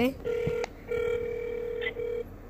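Ringback tone of an outgoing call on an iPhone on speaker, steady beeps: a short one, then one of about a second, with another starting near the end.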